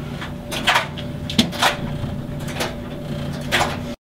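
A steady low machine hum with several short, sharp knock- and hiss-like noises over it. It cuts off suddenly at the very end.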